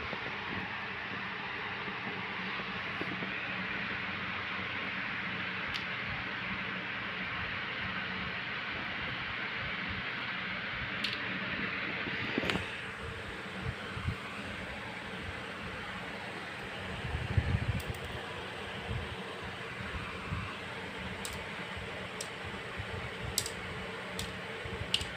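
Steady whirring hiss of a fan-type machine running in the room, with a few faint clicks and a short patch of soft low knocks about two-thirds of the way through.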